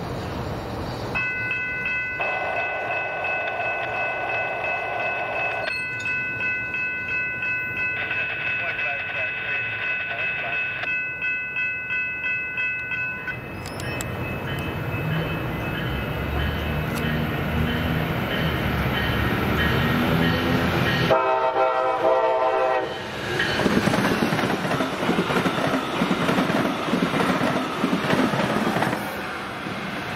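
Brightline passenger trains sounding their horns and running by: long, steady horn blasts through the first half, then rumbling rail and wheel noise, with another short horn blast about three-quarters of the way through.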